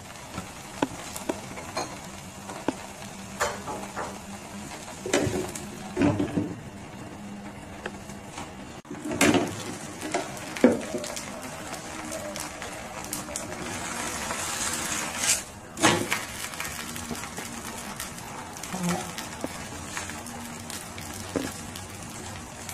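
Jianbing batter topped with egg sizzling steadily on an electric pancake pan as the egg cooks through, with scattered clicks and a few louder knocks from handling the pan.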